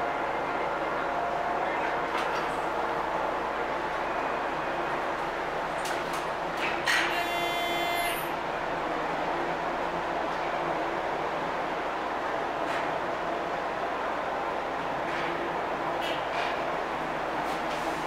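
OTIS hydraulic elevator with a steady running hum throughout, which sounds like its motor. About seven seconds in, an electronic buzzer sounds once for about a second.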